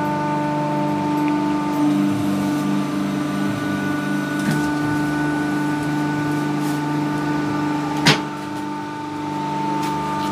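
A paper plate pressing machine running with a steady electric hum, with one sharp click about eight seconds in.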